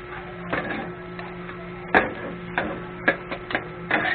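Two metal spatulas clanking and scraping on a flat iron griddle as chopped pork sisig is turned and heaped, in irregular strikes: one loud clack about two seconds in and a quick run of clacks near the end.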